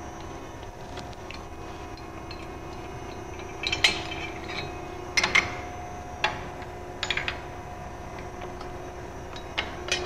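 Steel pins and fittings of a hydraulic tube bender clinking and clanking about half a dozen times, some ringing briefly, as they are loosened and pulled after a bend, over a steady hum.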